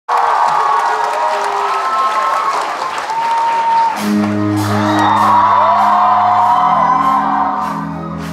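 Concert audience cheering and screaming, then about four seconds in the band comes in with a sustained low held chord, with the crowd's screams still going over it.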